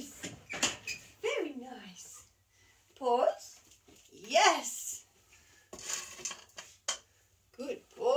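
A woman's high-pitched, sing-song voice in three or four short, wordless utterances that swoop up and down in pitch, with a few light knocks between them.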